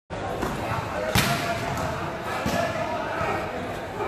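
A volleyball being struck or hitting the court: a sharp smack about a second in and another just over a second later, over a background of voices.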